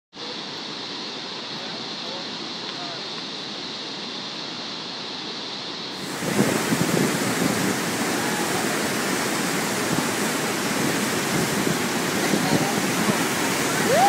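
Fish Creek's waterfall and whitewater rapids in high flood flow, a steady rush of water. About six seconds in it turns louder and brighter, heard from close above the torrent.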